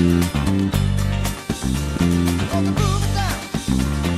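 Funk-rock band recording with an electric bass playing a syncopated, repeating groove on G minor 7, low notes broken by short gaps and ghost notes.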